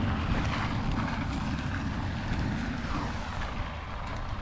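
Wind and rain buffeting the camera's microphone in a downpour: a steady rushing noise with a low rumble that slowly fades.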